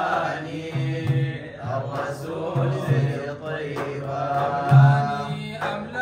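A group of men singing a Sudanese madih (praise song for the Prophet) together, accompanied by hand frame drums beaten in a steady rhythm of low strokes, some in pairs, with hand clapping.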